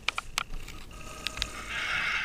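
Quick lip-smacking kisses on a paper photograph, several in the first half second and one more a little past a second in. Near the end, a canned studio-audience reaction from a sitcom sound app swells in.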